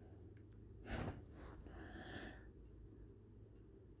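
Quiet, with a person's breathing close to the microphone: one short, louder exhale about a second in and softer breaths after it.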